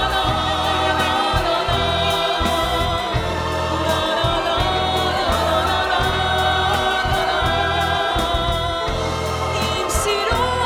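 Live symphony orchestra and choir performing an Armenian song: bowed violins playing sustained, wavering lines together with singing voices over a low accompaniment that comes and goes.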